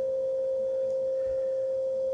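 A single steady pure tone, unchanging in pitch, with no other sound.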